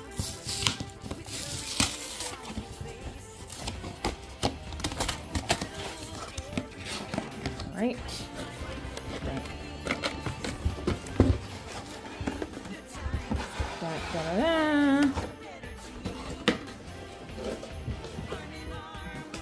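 Background music over the scrapes and knocks of a cardboard calendar box being slid out of its sleeve and handled, with a sharp knock about eleven seconds in.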